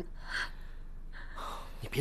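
Two short, audible breaths from a person, sharp intakes of breath, in the tense pause right after an angry accusation.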